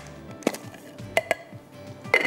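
A few sharp clicks and knocks from a small grinder jar being opened and handled after grinding cashews, over soft background music.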